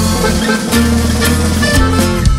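Regional Mexican band music: an instrumental passage of accordion, bajo sexto and electric bass over a steady beat, with no singing.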